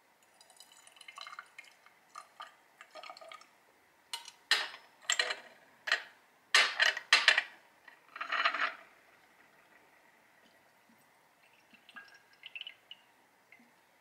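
Glassware being handled to pour liquid tincture into a small amber glass dropper bottle through a stainless steel funnel. Faint fiddling with bottle and cap comes first, then a cluster of sharp glass and metal clinks with a short splash of pouring liquid between about 4 and 9 seconds in.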